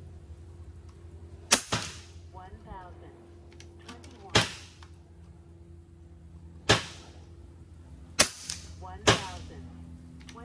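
FX Impact .30 PCP air rifle firing 44-grain slugs at about 1020 fps: a sharp report every one to three seconds, five in all, the last two close together.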